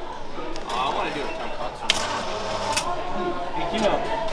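Indistinct voices of people chatting in a busy room, with two short, sharp clicks about two seconds in and just before three seconds.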